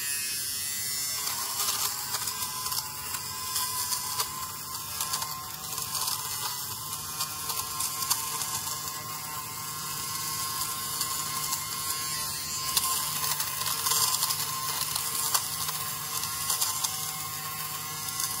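Corded Nova electric lint remover running steadily, its small motor humming while the spinning blades shave pilled fluff off a knit top.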